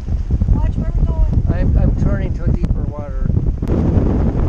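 Storm wind buffeting the microphone in a loud, continuous low rumble, with a person talking over it.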